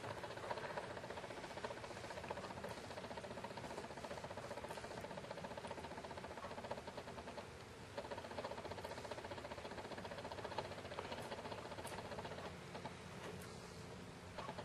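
Quiet room tone: a faint steady hum with small ticks and light rustles, dipping a little about halfway through and again near the end.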